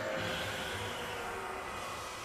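Anime battle sound effect playing from the episode: a steady rushing noise that fades slowly.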